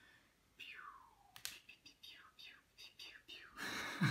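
A man whispering under his breath: a few soft, faint syllables, with a louder breathy sound starting near the end.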